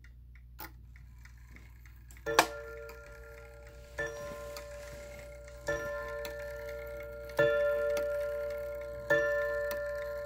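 Seth Thomas Fieldston-IW mantel clock ticking, then beginning to strike about two seconds in: five evenly spaced ringing blows, one about every 1.7 seconds, each ringing on until the next.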